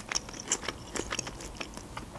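Close-miked chewing of a mouthful of sushi roll: quiet, irregular wet mouth clicks.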